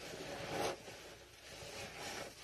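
Laundry soap paste being worked, with a quick rasping scrape that is loudest about half a second in and softer rasps near the end.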